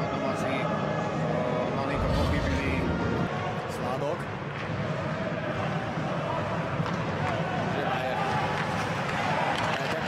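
Ice hockey arena sound: a steady crowd hubbub with voices, broken by short sharp clicks of sticks and puck on the ice, with a low rumble swelling about two seconds in.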